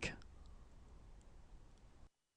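Near silence: faint room hiss with a few faint clicks, after the last syllable of a spoken word at the very start.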